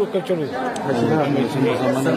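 Speech: a man talking in a steady stream, with other voices chattering around him.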